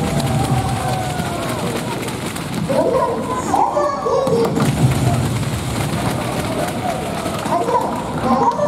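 Crowd chatter in a sports arena: a steady wash of many voices, with higher voices standing out about three seconds in and again near the end.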